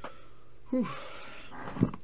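A man lets out a breathy "whew", one sigh falling in pitch, a little under a second in. A short knock follows near the end.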